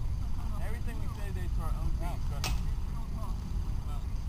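Distant voices of players calling and chattering across a baseball field over a low outdoor rumble, with a single sharp crack about two and a half seconds in.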